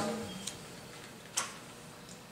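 Pause in speech with quiet room tone: a man's voice dies away at the start, then a faint tick about half a second in and a single sharp click a little before the end.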